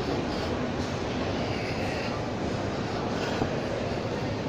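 Steady background rumble of a large indoor shopping-mall hall, with faint distant voices in it.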